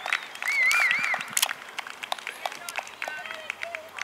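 Scattered hand clapping from the touchline mixed with children's high-pitched shouts, including a short wavering high call about half a second in.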